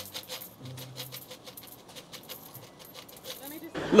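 Pennies poured from a cup into a pair of cupped hands: a run of small metallic clinks, under faint background music. Just before the end a man's loud voice cuts in.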